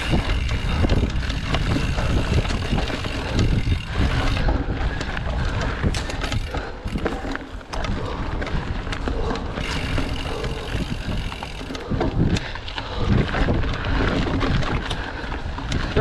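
Mountain bike ridden fast over a rough, leaf-covered forest trail: wind buffets the camera microphone, and the tyres on dirt and dry leaves mix with frequent rattles and knocks from the bike over bumps.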